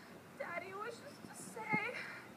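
A young woman crying in two short, high-pitched, wavering sobs, one about half a second in and one near the end.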